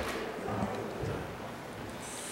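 Faint background noise in an echoing meeting hall: a low murmur of distant voices and a couple of soft knocks.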